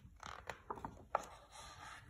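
A page of a picture book being turned by hand: faint paper rubbing with a few short taps and clicks in the first second or so.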